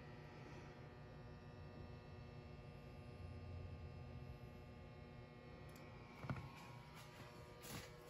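Near silence: room tone with a faint steady hum, and a couple of faint knocks near the end.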